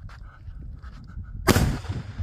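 A single firework bang about one and a half seconds in, sharp and loud, with a short echo dying away after it.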